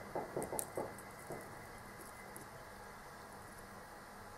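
A few faint small taps and ticks in the first second, from handling a soldering iron and a wired connector clamped in a bench vice, then quiet room tone.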